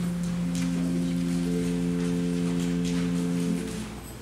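A steady musical chord built up note by note, each pitch entering in turn and held without wavering, then all stopping together just before the end: the starting chord given to a church choir before it sings.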